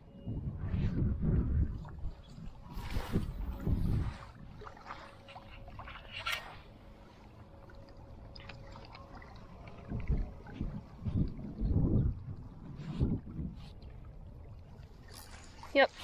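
Gusts of wind buffeting the microphone, coming in several irregular low rumbling surges, with a faint steady hum through the first half. A short spoken word near the end.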